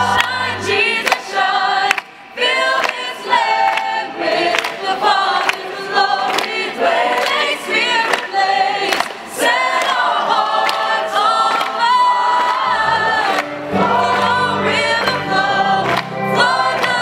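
Choir singing with many voices. A low instrumental accompaniment stops just after the start and comes back about 13 seconds in.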